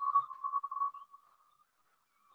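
A steady high-pitched tone that wavers in level and fades out about a second in, leaving near silence.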